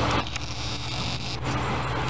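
Passenger train running along the track towards the listener: a steady low rumble and hum. The level drops suddenly a fraction of a second in, then comes back up.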